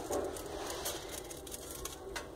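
Faint, scattered small clicks and light scraping as a hand presses and nudges a metal drawer frame bedded in mortar in a refractory-brick floor, settling it level.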